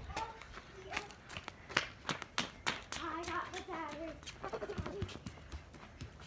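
A child's footsteps in flip-flops, an irregular run of short slaps and clicks, with faint children's voices calling a few seconds in.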